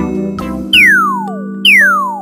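Two cartoon pop-in sound effects, each a quick falling whistle-like glide from high to low pitch, about a second apart, over held background music notes.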